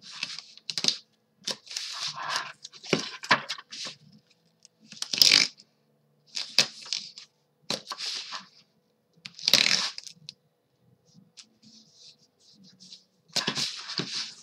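Double-sided score tape being pulled off its roll, torn and pressed down along the edges of a chipboard panel: a series of short, irregular ripping and rustling noises, the loudest about midway and again about two-thirds through.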